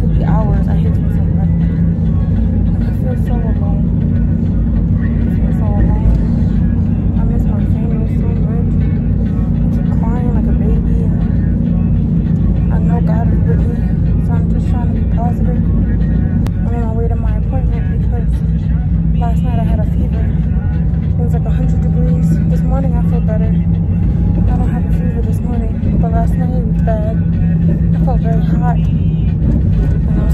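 Inside a moving car: a steady low rumble of engine and road noise, with indistinct voices talking over it throughout.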